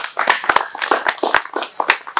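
Several people clapping in a quick run of sharp, separate claps.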